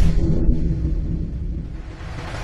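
A deep cinematic boom from a trailer-style intro, rumbling low and fading away over the two seconds, its higher sounds dying out about half a second in.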